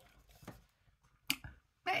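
A quiet pause broken by a faint tick and then one short, sharp click; a man's voice starts near the end.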